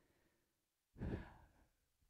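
A man takes a single short breath about a second in, picked up close by his headset microphone; otherwise near silence.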